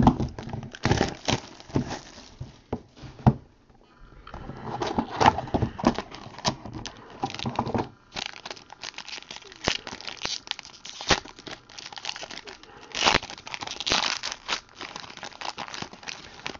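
Foil wrapper of a baseball card pack crinkling and tearing as it is handled and ripped open, in irregular crackles with brief lulls about four and eight seconds in.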